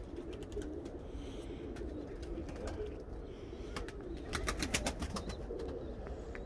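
Domestic pigeons cooing over a low background hum, with a quick run of sharp clicks about four and a half seconds in.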